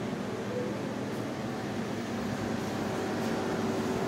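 Steady hum of a running wall-unit air conditioner, a continuous whirring with a faint low tone that does not change.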